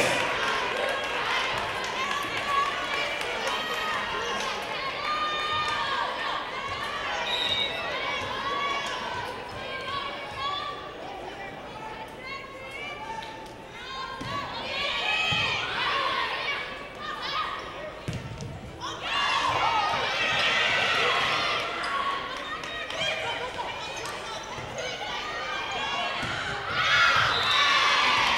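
Volleyball match in a gym hall: players and spectators calling out and cheering, with the ball being bounced and struck. The voices swell louder about two-thirds of the way through, during the rally.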